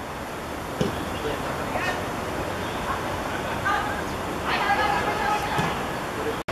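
Open-air football pitch ambience: a steady wash of outdoor noise with football players shouting and calling to each other, loudest just past halfway through, and a single thud about a second in.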